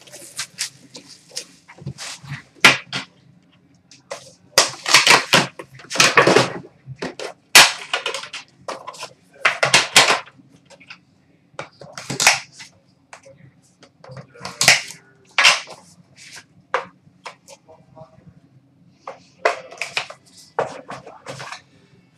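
Plastic shrink wrap being torn and crinkled off a sealed hockey card box, then the cardboard box and its inner packaging being handled. It comes as a series of short, irregular rustling and crackling bursts with pauses between them.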